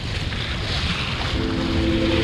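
Wind buffeting the microphone and sea water rushing along a sailboat's bow as it moves under way. A steady held music chord comes in about halfway through.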